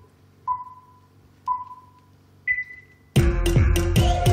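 Countdown beeps: two short low beeps a second apart, then a higher, longer beep, and just after three seconds in loud music with a regular heavy beat starts.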